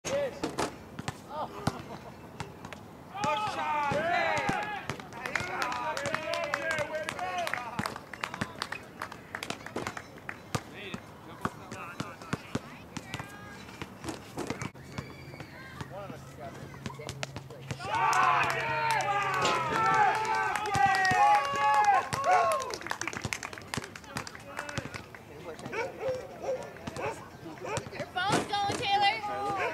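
Voices of cricket players calling out on the field in two spells, the louder one about two-thirds of the way through. Many short clicks and knocks are scattered throughout.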